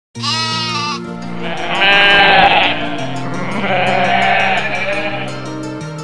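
Background music with a steady beat, and a goat bleating over it: two long, wavering bleats in the first three seconds.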